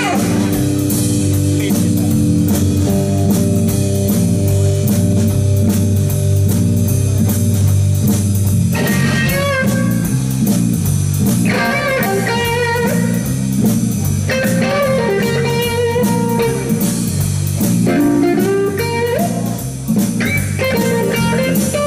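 Live blues-rock band in an instrumental section: electric bass and drum kit keep a steady groove under electric guitar. A saxophone phrase ends right at the start, and from a little before halfway an electric guitar lead line with string bends comes in.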